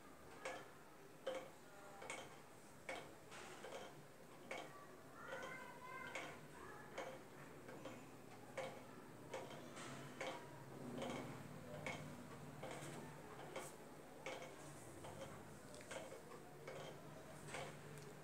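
Faint, regular ticking, about three ticks every two seconds, over a low steady hum that grows a little stronger in the second half.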